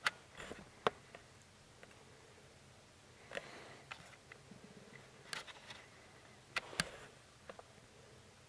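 Faint background with a handful of short clicks and rustles scattered through it: a sharp click at the start, another about a second in, a short rustle in the middle, and two clicks close together near the end. No shot is fired.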